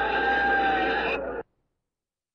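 Old meeting recording with a drawn-out, slightly falling high note over background noise and a low mains hum. It cuts off abruptly about one and a half seconds in, leaving dead silence.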